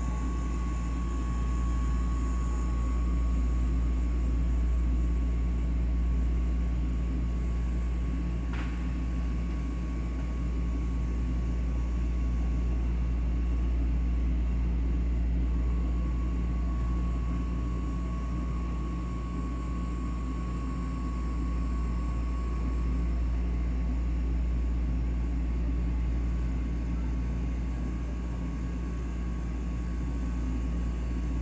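Steady low rumble of a passenger train running, heard from inside the carriage, with a thin steady whine that drops away early and comes back about halfway through. A single sharp click about nine seconds in.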